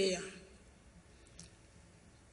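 A man's voice finishes a word, then low room tone with a single faint click about a second and a half in.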